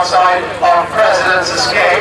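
A man's voice calling a harness race, talking without a break.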